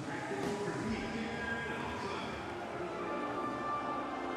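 A slow, stately tune with long held notes, typical of a national anthem played over an arena's sound system.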